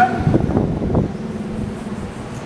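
A man's voice for about the first second, over a steady low hum that runs on throughout.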